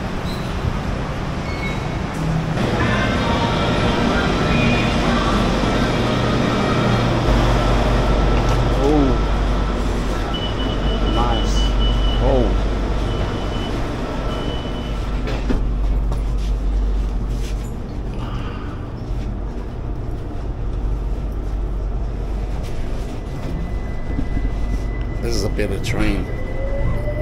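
Bangkok BTS Skytrain running: a low, steady rumble inside the carriage, with background voices. A steady whine of several tones sounds through the first half.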